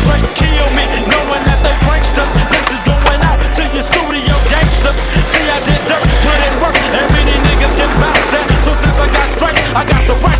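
Skateboard wheels rolling on street asphalt, with clacks of the board, heard under backing music with a heavy bass line.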